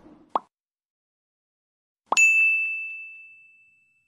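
Subscribe-button animation sound effects: a short click-like pop about a third of a second in, then a bright bell ding about two seconds in whose single high tone rings on and fades over more than a second.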